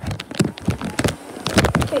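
Bounce house blower just switched on, a steady hiss, under a quick irregular run of crinkles and knocks from the vinyl inflatable filling and being handled close to the microphone.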